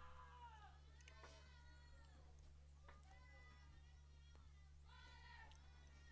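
Near silence over a steady low hum, with faint, high-pitched voices calling out a few times, most clearly near the end.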